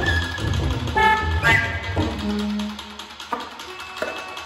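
Free-improvised jazz from soprano saxophone, bowed cello and drum kit. Short high saxophone notes over a low drum rumble come first. About halfway through, the playing thins to one low held note, then sparse taps.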